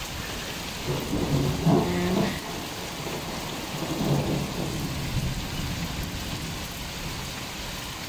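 Steady rain falling on the surface of an outdoor swimming pool and the paving around it.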